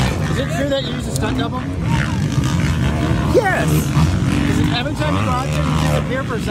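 Motocross dirt bike engines running on the track, a steady drone, with voices over it.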